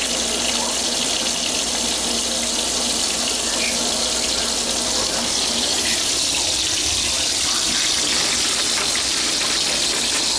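Bacon sizzling in a frying pan on a small two-burner stove: a steady hiss.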